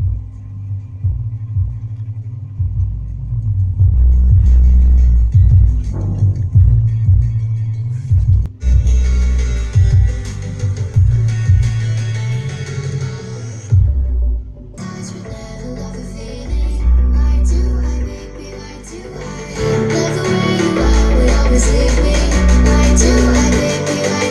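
Music with heavy bass playing through a 5.1 home theater whose subwoofer output feeds an external 400-watt mono amplifier driving a Sony Xplod subwoofer. The sound is pretty loud and the bass is also loud even with the volume set very low. There are a couple of brief breaks in the music.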